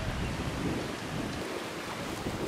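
Wind buffeting the microphone over open water: a low, rumbling wind noise that thins out about one and a half seconds in, leaving a steady hiss of wind and choppy water.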